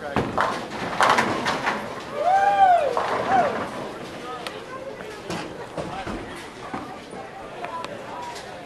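Bowling pins clattering as a ball strikes the rack, a burst of sharp knocks in the first couple of seconds. This is followed by a person's drawn-out call that rises and falls in pitch, then lighter clatter and voices of a busy bowling alley.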